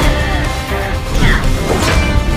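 Dramatic action-scene music with crashing impact sound effects from an animated superhero fight, with two sharp hits in the second half.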